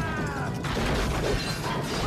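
A man's drawn-out yell sliding down in pitch, then about half a second in, a sudden loud clatter and crash of metal and boxes tumbling down wooden stairs, a film fall-and-crash sound effect.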